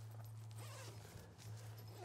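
Near quiet: a steady low hum with faint fabric rustling.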